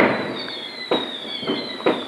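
Fireworks exploding outside, heard from indoors: a sharp bang right at the start that dies away, then three fainter cracks over the following two seconds.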